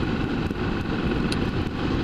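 BMW F650ST motorcycle's single-cylinder engine running steadily at cruising speed, mixed with wind and road noise on the camera's microphone.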